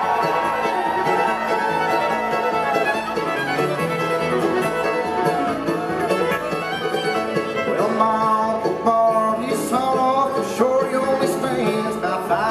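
Live bluegrass band playing an instrumental break: fiddle with sliding notes over banjo, acoustic guitar, mandolin and upright bass.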